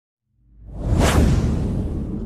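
Whoosh sound effect on a title animation: it swells up out of silence, peaks about a second in with a bright sweep, and leaves a deep low tail that slowly dies away.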